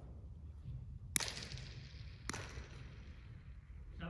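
A cricket ball cracked off a bat, then a second, softer knock about a second later, each ringing out in the echo of a large indoor sports hall.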